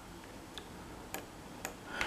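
Three faint clicks of a computer mouse, about half a second apart, over low room hiss.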